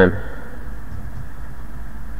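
Steady low background hum with a faint even hiss, unchanging and with no other events, just after the last word of a spoken phrase ends.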